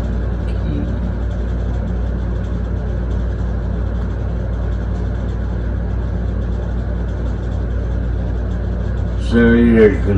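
A steady, deep droning rumble with a faint hum above it. A man's chanting voice comes in near the end.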